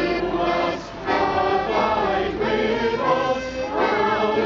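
A school children's choir singing together, with a brief break between phrases about a second in.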